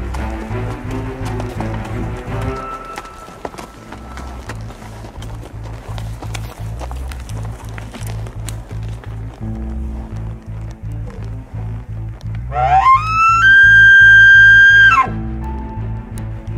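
Background music with a steady beat. About twelve seconds in, a loud elk bugle rises steeply to a high, held whistle for about two seconds, then breaks off.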